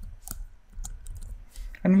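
Typing on a computer keyboard: a few unevenly spaced keystroke clicks.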